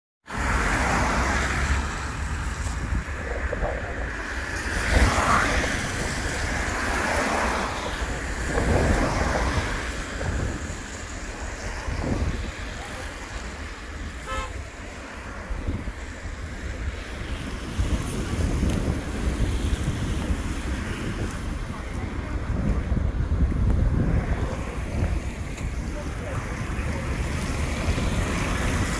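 Wind buffeting the microphone over the hiss of traffic passing on a wet road, with a few swells as vehicles go by.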